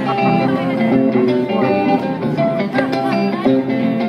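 A live Guinean band playing: picked electric-guitar melody lines to the fore over bass guitar and hand drums and drum kit, without a break.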